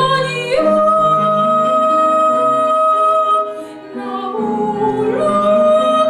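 Soprano singing with grand piano accompaniment: a long held high note, a short break for breath a little before the fourth second, then another sustained note over the piano.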